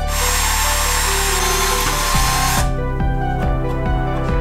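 Electric drill spinning a bit through the base of a plastic cup into a plastic pipe. It runs for about two and a half seconds and stops, over background music.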